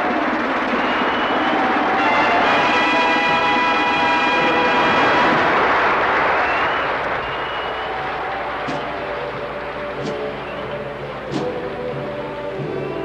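A drum and bugle corps playing sustained bugle chords under a dense rushing wash of sound for the first half. After about seven seconds it drops to quieter low-brass chords punctuated by a few sharp drum hits.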